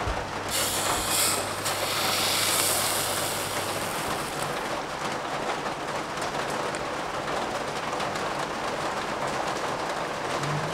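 Cream being poured from a carton into a stainless-steel saucepan: a steady pouring splash, loudest in the first few seconds.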